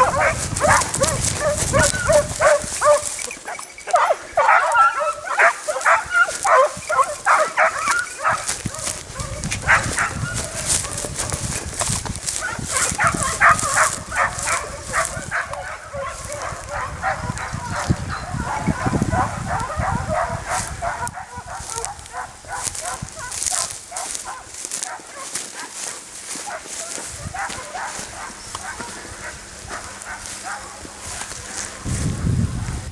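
Hare-hunting dogs baying on a hare's trail, many rapid yelping calls a second from more than one dog, growing fainter and sparser in the later part.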